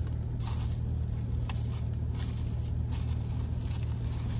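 Steady low hum of a car idling, heard inside the cabin, with a few faint clicks and rustles.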